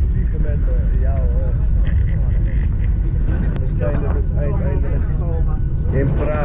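Airliner cabin noise: a steady low rumble throughout, with people talking over it.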